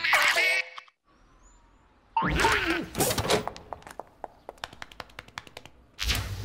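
Cartoon sound effects: a short pitched sting cuts off, and a second of near quiet holds a faint falling whistle. Then comes a loud wobbling pitched sound, followed by a run of quick clicks, about six a second, that fade away.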